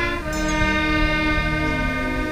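Wind band of saxophones, clarinets and brass playing, holding long sustained chords that change note every second or so.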